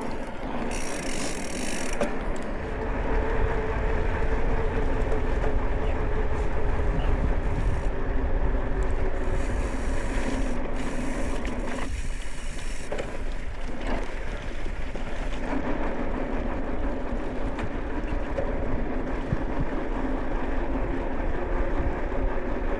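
Mountain bike riding noise: tyres rolling with a steady hum, and wind rumbling on the handlebar camera's microphone. It dips briefly about halfway through.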